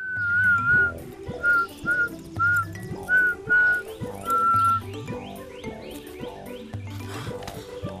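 A person whistling a short, lilting tune of several notes, some held and some short, over light background music with a steady beat. The whistling stops about five seconds in while the music carries on.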